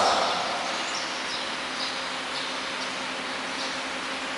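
Faint bird chirps, a few short calls spread through the lull, over steady background noise and a low hum.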